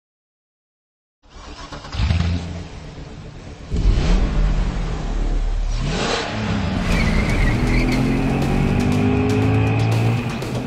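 Silence for about the first second, then a sports car engine revving in short bursts, followed by a rising pitch as it accelerates hard over the last few seconds.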